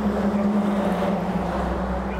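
A steady motor hum with a low rumble that swells about a second and a half in.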